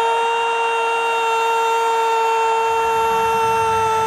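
A football commentator's goal cry, the Indonesian 'masuk!' ('it's in!'), held as one long, steady, high note. A low background rumble comes up under it after about two and a half seconds.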